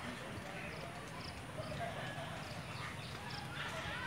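Outdoor crowd ambience: a low murmur of distant voices, with a few faint, short high chirps of birds.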